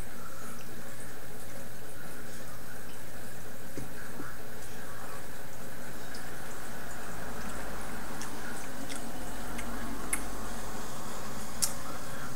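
Beer being sipped from a glass and swallowed, heard faintly over a steady background hiss, with a few small clicks near the end.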